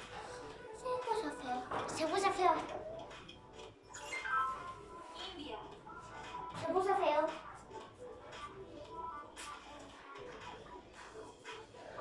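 Background music from a television quiz video playing steadily, with a child's voice heard in a few short stretches, loudest in the first few seconds and again about two-thirds of the way in.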